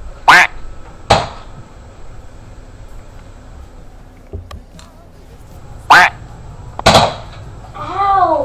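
Two pairs of short, sharp sounds, the two in each pair under a second apart, one pair just after the start and the other about six seconds in: toy-gun shots and a small child's startled cries, over faint television sound. Near the end a high, laughing voice from the television begins.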